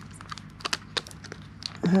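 Long false fingernails clicking and picking at the plastic protective wrap on a new smartphone: a scatter of short sharp ticks with some crinkling of the plastic.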